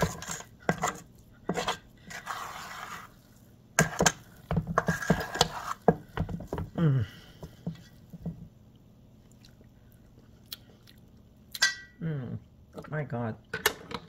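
A metal spoon scraping and clinking against a stainless steel mixing bowl as it stirs and presses a thick, doughy mixture, in a run of knocks and scrapes. It falls quiet partway through, and a few short vocal sounds come near the end.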